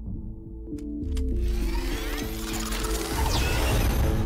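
Film soundtrack: a pulsing electronic synth score, with mechanical clicks about a second in and then a loud rising rush of sci-fi vehicle effects as the light cycles form and race off.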